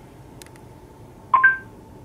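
A short electronic chime of two rising notes, about a second and a half in, from the Google Assistant on a phone linked to the car over Bluetooth, playing through the car's audio system: the tone that the spoken question has been taken, just before the assistant answers. Otherwise quiet cabin with a couple of faint clicks.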